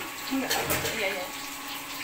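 Water poured from a plastic container onto raw glutinous rice in a metal pot, to soak the rice.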